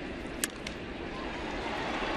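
A single sharp crack of a bat meeting a pitched baseball about half a second in, with the ball coming off the end of the bat, over a steady crowd hum in the ballpark.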